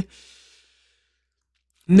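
A short, soft exhaled breath from a man just after he finishes a word, followed by about a second of dead silence before his speech resumes near the end.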